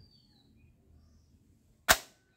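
Toy foam-dart pump shotgun firing once near the end: a single sharp snap that dies away quickly, after a near-quiet stretch with a faint click at the start.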